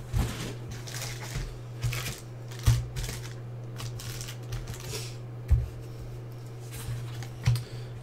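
2018-19 Panini Certified basketball trading cards being handled and dealt off a stack onto piles: stiff card stock sliding and flicking, with a few sharp taps as cards are set down. A steady low hum runs underneath.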